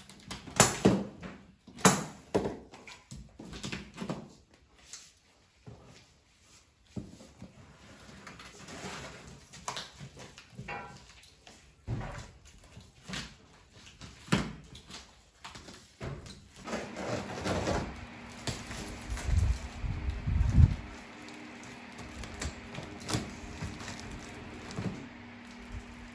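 Scissors snipping the plastic packing straps and tape on a large cardboard shipping box, then the tape being torn and the cardboard flaps scraped and pulled open: a string of irregular clicks, rips and rustles, with a few low thumps about three quarters of the way through.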